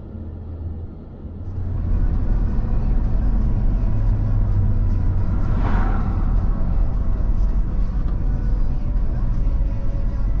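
Steady low road and engine rumble of a vehicle driving on a highway, heard from inside the cabin, growing louder about a second and a half in. An oncoming SUV swishes past around the middle.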